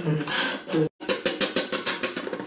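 A drinking straw being worked in a cup lid, giving a quick run of light clicks and rattles about eight to ten a second. Low talk comes first, then the sound cuts out completely for a moment.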